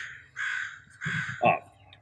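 Crows cawing: two harsh caws, the second fainter.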